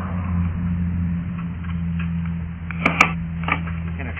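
A 3/8-inch-drive ratchet loosening the 12 mm bolt of an outboard's trim-tab anode, giving a few sharp metallic clicks about three seconds in, over a steady low hum.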